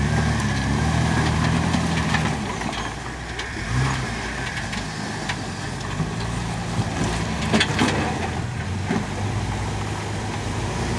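Modified Jeep Wrangler's engine running at low revs as it crawls slowly over boulders, with scattered sharp clicks and knocks from the rig working over the rock, the loudest a little after seven and a half seconds in.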